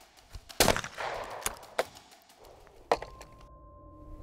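A Beretta competition shotgun fired at a skeet target: one loud shot about half a second in, its report ringing out over the range for about half a second. A second, shorter sharp crack follows near the three-second mark.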